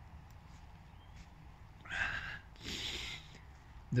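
A man breathing deeply close to the microphone: a short sharp breath about halfway through, then a longer airy breath of under a second.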